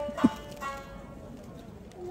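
Shamisen playing traditional Japanese dance music: two sharp accents near the start, then plucked notes dying away, with the second half quieter.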